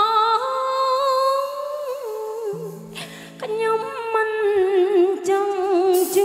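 A woman singing a slow Khmer sentimental song into a microphone with a live band, in long held notes with vibrato. The voice breaks off briefly about halfway, leaving low sustained instrument notes, then comes back.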